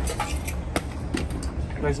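Several light, sharp clicks and taps of a spirit level being handled against concrete blockwork while checking it for plumb, over a steady low rumble.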